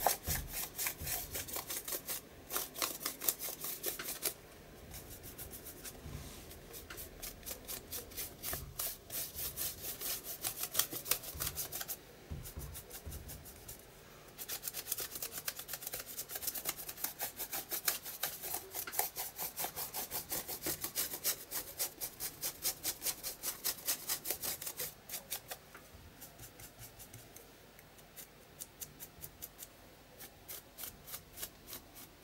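A dry brush scrubbing white gesso onto a paper art journal page in quick back-and-forth strokes, several a second, with a few short pauses. The strokes grow fainter near the end.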